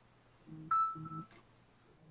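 Short electronic beep, a steady tone lasting about half a second, starting a little over half a second in, with a low muffled sound under it.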